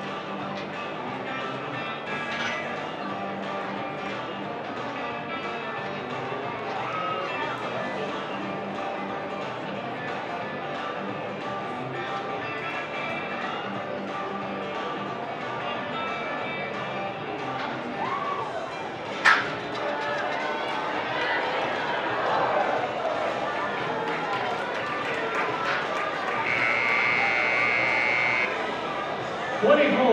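Background arena music with crowd chatter, broken by one sharp bang about two-thirds of the way in. About seven seconds later a steady electronic buzzer sounds for about two seconds, the timer marking the end of a steer ride.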